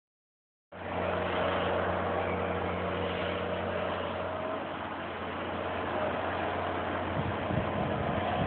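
Heavy earthmoving equipment working on sand, heard at a distance as a steady low diesel engine hum under an even rushing noise; the sound starts just under a second in.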